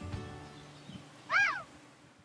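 A single short meow, rising then falling in pitch, over the fading tail of soft background music.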